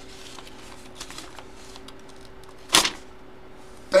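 Paper envelope being handled and opened: soft rustles and small ticks, then one brief loud paper swish near three seconds in as the card insert slides out. A faint steady hum runs underneath.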